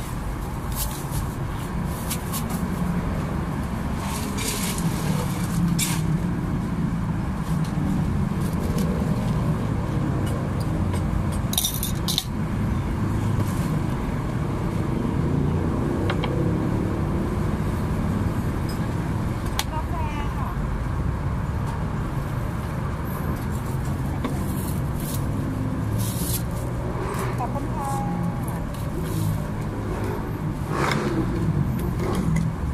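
Steady traffic rumble from the road with voices in the background, and occasional sharp clinks and knocks of stainless steel cups and utensils being handled.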